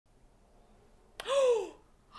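A woman's short, shocked gasp of an exclamation, voiced with a pitch that rises then falls and lasting about half a second. It starts abruptly a little over a second in, after near silence.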